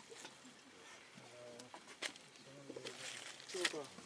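Quiet, with faint murmured men's voices in short snatches and a few sharp clicks, one about halfway through and two close together near the end.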